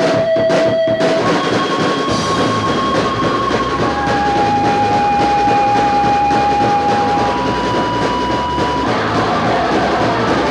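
A punk rock band plays loud and fast on electric guitar, bass guitar and drum kit. Long held high notes ring over the playing, each lasting a couple of seconds before moving to a new pitch.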